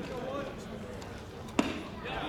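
A baseball pitch smacking into the catcher's leather mitt with a single sharp pop about a second and a half in, over background voices.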